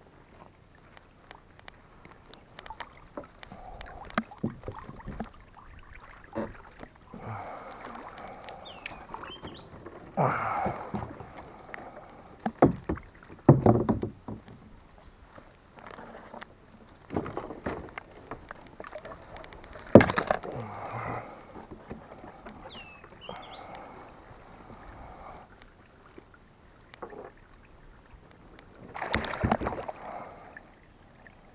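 Water splashing and sharp knocks against a plastic kayak hull as a tangled fishing net is hauled and worked at the water's surface, in irregular bursts with the sharpest knock about two-thirds of the way through.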